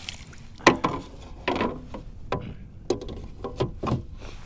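Handling noise on a kayak: a plastic fish-measuring board and landing net knocking against the plastic hull, about six sharp knocks with the loudest less than a second in, and water splashing off the board as a redfish is landed.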